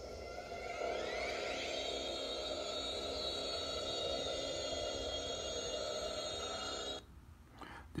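TV soundtrack of sustained, electronic-sounding tones with rising sweeps about a second in, heard through a laptop speaker; it cuts off abruptly about seven seconds in as the clip ends.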